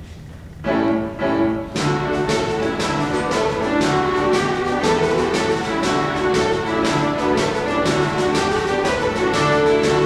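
An Irish ceili band of massed fiddles with piano and drum strikes up a jig: a couple of opening chords about half a second in, then from about two seconds in the full band plays at a steady jig rhythm, with the drum marking the beat.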